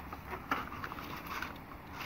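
Small cardboard boxes being shifted about by gloved hands inside a larger carton: faint scuffing and rustling, with a light knock about half a second in.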